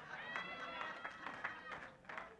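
Faint voices and soft laughter in the room, far quieter than the preaching.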